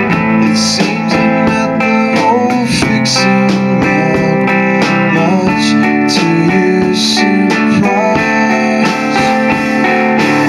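A live rock duo playing: a hollow-body electric guitar strummed in sustained chords over a drum kit, with evenly repeated cymbal strokes and a few brighter crashes.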